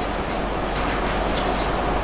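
Steady, even hiss with a low hum underneath: the room noise of a lecture hall with its sound system on.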